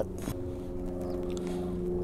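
A steady, even machine hum with a low pitch that does not rise or fall.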